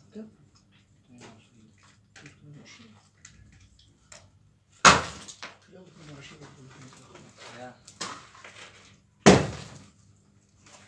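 Two loud, sharp bangs about four and a half seconds apart, each dying away within half a second, over faint talk.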